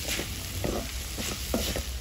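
Wooden spatula scraping and stirring chopped onions, green chillies and garlic frying in oil in a metal wok, about two or three strokes a second over a steady sizzle. The stirring stops at the very end.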